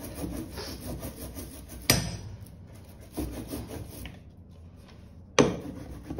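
Rubber ink brayer rolling back and forth through block-printing ink, a rough sticky rolling sound in repeated strokes. Two sharp knocks cut in, about two seconds in and near the end, the second the loudest.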